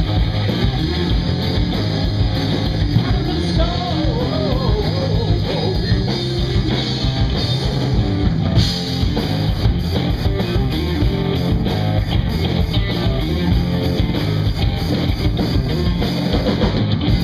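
Live rock band playing loud and steady: electric guitar, electric bass and a drum kit, with a strong low end.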